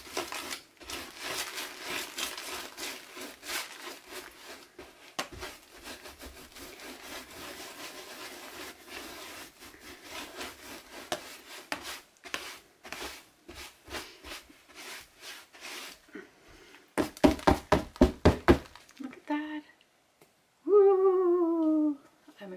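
A dry paintbrush sweeping loose glitter and broken glass off a painted canvas, a long run of scratchy rustling strokes. Later comes a quick run of about eight sharp knocks against the board.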